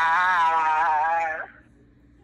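A man's voice holding one long, drawn-out vowel at a nearly steady pitch with a slight waver. It stops suddenly about a second and a half in, leaving faint room tone.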